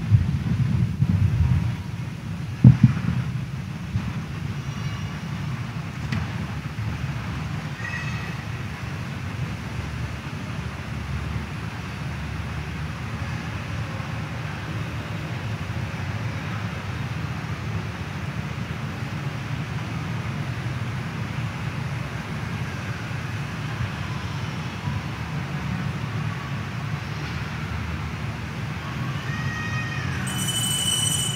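Steady low rumble of background room noise, a little louder in the first couple of seconds, with a single sharp knock a little under three seconds in.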